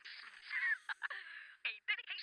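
A man laughing in breathy, wheezing pulses that carry on from a bout of laughter just before.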